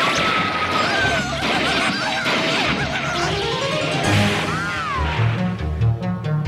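Cartoon explosion and crashing sound effects over orchestral soundtrack music, with a swooping rise-and-fall whine about four and a half seconds in, after which the music's low notes come forward.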